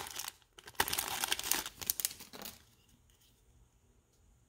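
Foil wrapper of a 2021 Topps Series 1 baseball card pack crinkling as it is torn open and peeled off the cards, in a run of crackles that stops about two and a half seconds in.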